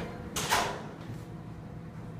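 A single short clunk from the Otis elevator's sliding door, about half a second in, followed by a low steady background hum.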